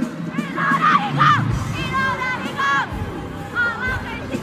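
Concert crowd screaming and cheering, many high voices overlapping, with music playing underneath.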